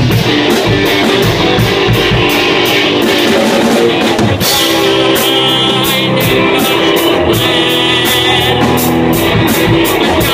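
Live rock band playing: electric guitar over a drum kit with regular cymbal strokes. The sound gets fuller and brighter about four seconds in.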